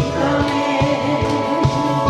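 A woman singing through a handheld microphone over a karaoke backing track with a steady drum beat and bass line.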